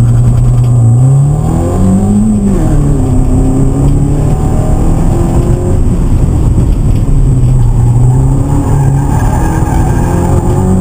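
Ford ZX2's four-cylinder engine under hard acceleration on an autocross run, heard from inside the cabin. Its pitch climbs to a peak about two seconds in, drops at a shift, then rises and falls as the driver accelerates and lifts between cones.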